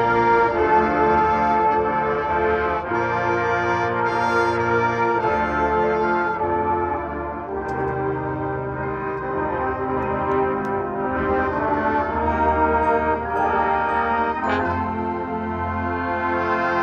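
High school marching band's brass section playing held chords that change every second or two.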